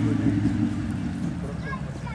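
Off-road 4x4's engine running and fading as the vehicle pulls away across the course, its low drone sinking steadily over the two seconds.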